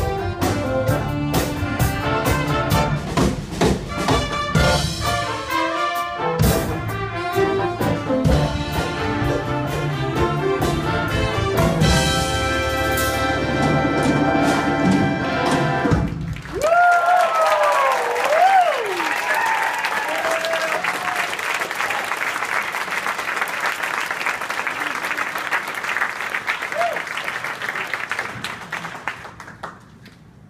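Jazz big band with trumpets, trombones, saxophones and rhythm section playing the close of a tune, ending on a held chord about halfway through. The audience then applauds, with a few cheers at first, and the applause fades out near the end.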